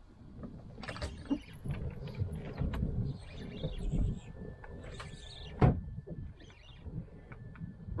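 Spinning reel being cranked as a hooked fish is fought, over uneven rumble of wind and water against a small boat, with scattered clicks. A sharp knock about two-thirds through, and a faint steady high whine in the second half.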